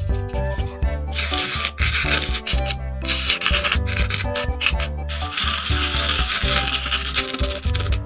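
Plastic spoon rubbing coloured sand across a sticky sand-painting card: a gritty scraping that starts about a second in, breaks off briefly around the five-second mark, then carries on, over background music.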